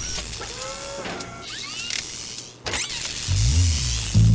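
Cartoon sound effects of robotic arms at work: mechanical whirring with short gliding servo whines and a sharp zap. Low, pulsing music comes in a little over three seconds in.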